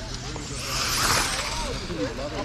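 Electric RC car passing close by on concrete: a rush of motor and tyre noise that swells about half a second in and fades away just before the end.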